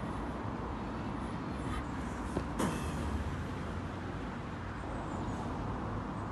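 Outdoor background noise: a low steady rumble, with a single short knock about two and a half seconds in.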